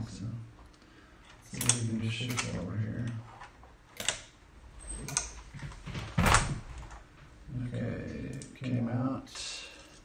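Scattered clicks and knocks of plastic and metal parts as an Apple Extended Keyboard II is handled with its keycaps off, with the sharpest knock about six seconds in. A man's low voice mumbles in between, without clear words.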